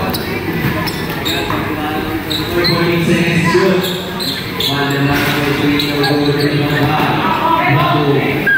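A basketball bouncing on the court a few times during play, with players and spectators shouting and talking throughout.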